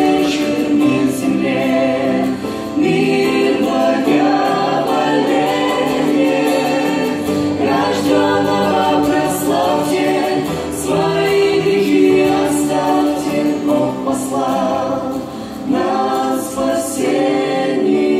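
Mixed male and female vocal group singing a Russian-language Christmas song in harmony through microphones and a PA, with acoustic guitar accompaniment. The singing is continuous and steady in level.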